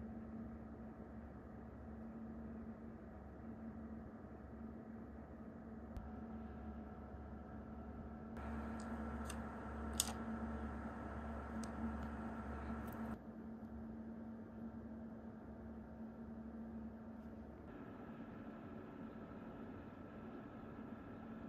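Steady low hum of a running computer, with a handful of sharp keyboard key clicks in a louder stretch around the middle, the strongest about ten seconds in.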